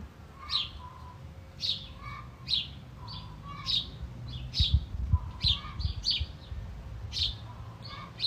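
Small birds chirping, short high calls repeating about once or twice a second, with a low rumble and a few low thumps about halfway through.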